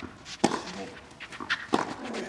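Tennis rally on a clay court: two sharp racquet-on-ball hits about a second and a half apart, the first about half a second in and the second near the end. Short grunts from the players come with the hits.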